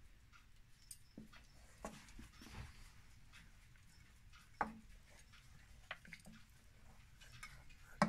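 Faint stirring of a jelly-like simmering carrageen brew with a wooden spoon in a stainless steel saucepan, with a few light knocks of the spoon against the pan, the sharpest about four and a half seconds in.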